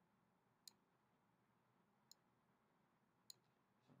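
Three faint computer mouse clicks, spaced a second or so apart, over near silence.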